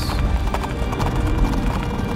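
Horses galloping, a sound effect of rapid clattering hoofbeats laid over dramatic background music.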